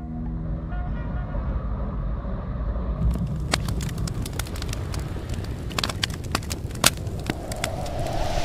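Fire sound effect for a burning-logo sting: a steady low rumble, joined about three seconds in by scattered crackles and pops like burning, with a hiss swelling near the end.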